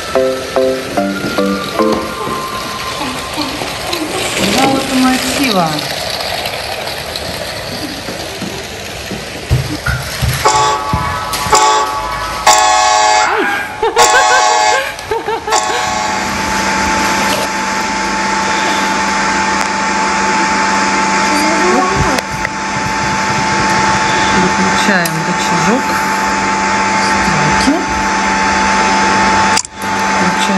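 LEGO 60336 freight train's Powered Up electric motor running with a steady hum through the second half, as the train drives along plastic track. Before it come a short stepped melody at the start and a run of loud chord-like blasts in the middle.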